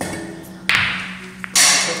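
A pool cue strikes the cue ball with a click, and a lighter ball click follows. Background music plays throughout, with two loud bursts of noise near the middle and end.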